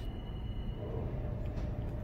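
Steady low rumble heard from inside a car's cabin at a car wash tunnel entrance, with a faint steady hum coming in about a second in.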